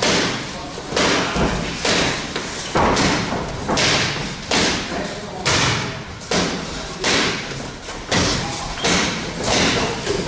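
Boxing gloves striking a coach's focus mitts in pad work: a steady series of sharp smacking thuds, about one a second, roughly a dozen in all.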